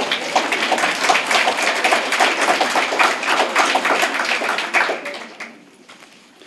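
Audience applause, a dense patter of many hands clapping, dying away about five seconds in.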